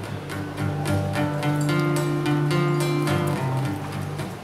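Acoustic guitar strummed in a steady rhythm, playing a song's opening chords.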